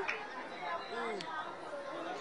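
Indistinct voices chattering in the background, with no clear words, and a brief click a little after a second in.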